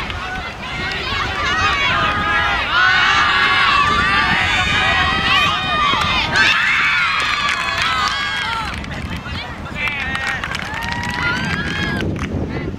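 Several players shouting and calling out at once during play, overlapping high voices, loudest from about two to six seconds in and rising again near the end.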